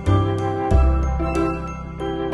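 Background music: a tinkling melody with light percussion ticks over bass notes.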